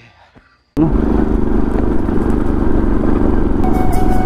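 A faint voice at first, then about a second in, the riding sound of a Bajaj Pulsar NS200's single-cylinder engine cuts in suddenly: a steady engine drone with wind and tyre noise on a gravel track.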